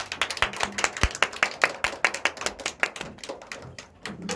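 Applause from a small audience, the separate claps distinct and packed close together, several a second.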